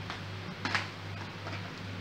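A spoon clicks once against the tub while scooping sorrel puree into cake batter. A steady low hum runs underneath.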